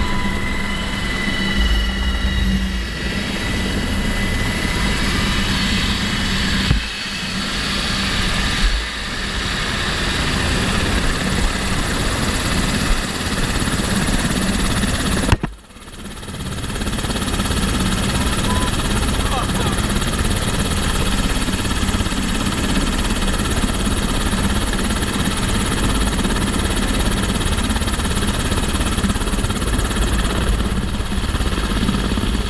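Military helicopter running at close range: loud, steady rotor and engine noise, with high whining tones at first. The sound cuts out sharply for a moment about halfway through and then comes back just as steady, with the rotor wash blowing dust over troops lying on the ground.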